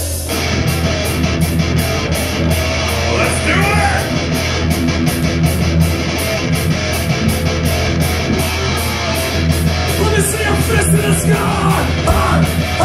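Live heavy metal band playing: distorted electric guitars, bass and drums, with the full band coming in just after the start and a steady beat of about three to four hits a second.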